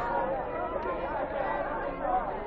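Crowd chatter: many people talking at once, their voices overlapping steadily.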